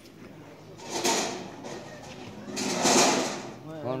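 Broken concrete and stone rubble crunching and scraping underfoot, in two long grinding bursts about a second in and near the end, the second one louder.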